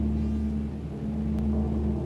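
Music opening with a deep timpani note left ringing after a single heavy stroke: it dies away, then swells again in the second half.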